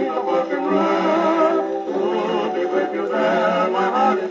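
Acoustic gramophone with a gooseneck horn tone arm playing a 1927 Perfect 78 rpm band record. The tune is carried by held notes with a wide, wavering vibrato, and the sound has the narrow, top-less tone of an acoustic 78.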